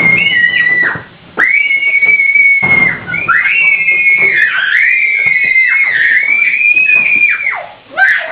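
Long, high-pitched wavering tones made by a person, in three stretches with short breaks about a second and three seconds in. The last stretch is the longest and wobbles up and down, and each stretch ends in a falling glide.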